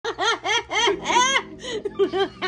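A young child laughing in four quick bursts, then a longer squeal that rises and falls.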